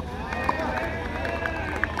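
Several people talking over one another in the background, their voices overlapping, over a steady low rumble.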